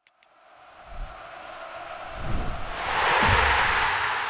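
Promotional end-card sting: a swell of noise that builds to its loudest about three seconds in, with two deep booms about a second apart, then starts to fade.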